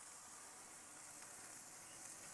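Faint, steady sizzling hiss of cheeseburger patties and dripping fat over hot charcoal in a kettle grill.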